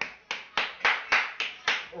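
One person clapping their hands, about seven claps in a steady rhythm, three or four a second.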